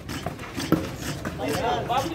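Men's voices calling out on a football pitch, with a few sharp knocks, the loudest a little under a second in, from the ball being kicked and players' feet on the hard dirt surface.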